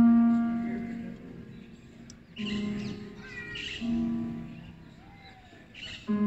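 A few slow plucked guitar notes, each struck and left to ring out and fade, with a harsh crow-like caw in the middle.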